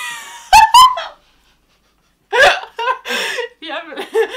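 A woman laughing hard: two sharp, loud gasping bursts about half a second in, a break of about a second, then a fresh run of laughter.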